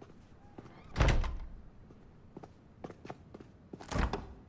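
A door shut with a heavy thud about a second in, followed by a few light clicks and knocks and another sharp thump near the end.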